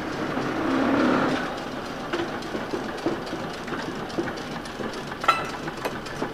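A vintage electric trolley car rolls slowly through yard trackwork. A rumble swells about a second in, then the wheels click over rail joints and switches roughly once a second, with a louder clack near the end.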